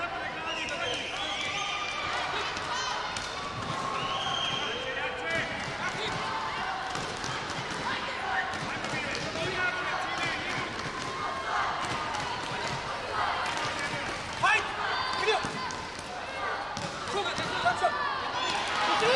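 Taekwondo fighters' feet stepping and stamping on the competition mat, with kicks thudding on the body protectors: one sharp loud thud about fourteen seconds in and two in quick succession near the end. Voices calling out around the mat throughout.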